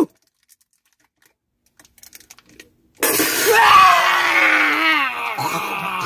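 Near silence, then about three seconds in a loud, drawn-out scream whose pitch wavers and falls over about three seconds: a woman's cry at the burn of hot sauce in her drink.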